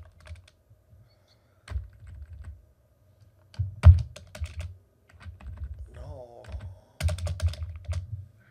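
Computer keyboard typing in irregular bursts of keystrokes: a short group, then a quick flurry with one heavy keystroke about four seconds in, then rapid typing through the last few seconds.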